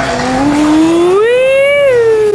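A woman's long drawn-out vocal cry, with no words, rising steadily in pitch and then held high.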